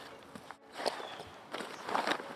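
A few soft rustles and scuffs as a cloth sack and fabric are handled among grass and rocks, mostly in the second half.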